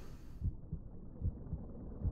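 Soft, low, muffled thumps, about two to three a second, over a faint low hum.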